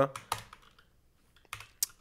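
Computer keyboard keystrokes: a few faint taps just after the start, then a few sharper key presses near the end that run a notebook code cell.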